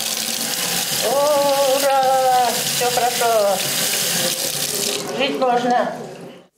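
Water running steadily from a mixer tap into a sink basin, the hot water coming through. It stops near the end.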